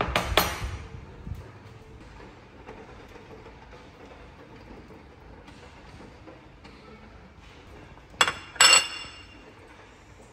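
A ceramic bowl with a metal ladle in it set down on a glass tabletop with a clink. Near the end, two sharp ringing metallic clinks about half a second apart, from metal tongs against the air-fryer oven's wire rack.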